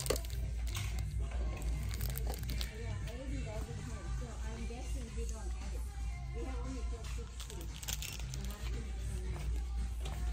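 Plastic-wrapped balloon packages crinkling in short bursts as they are handled, over background music and a steady low hum.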